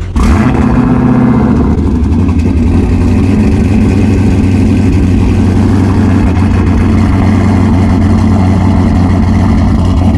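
Dodge Charger's twin-turbo 397 stroker Hemi V8 on a cold start: it catches with a loud flare just after the start, then settles within a couple of seconds into a steady, loud idle.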